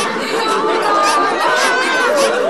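Indistinct chatter: several voices talking over one another.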